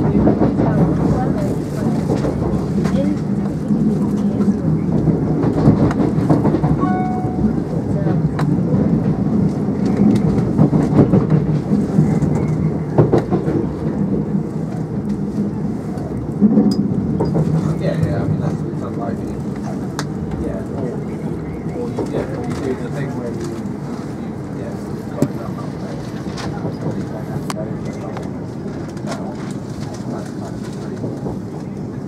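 Passenger train heard from inside the carriage while running: a steady rumble of wheels on rails with fine clicking, and indistinct voices in the carriage. It gets somewhat quieter in the second half.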